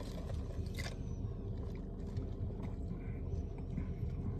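Quiet, steady low hum inside a parked car's cabin, with one faint soft click a little under a second in.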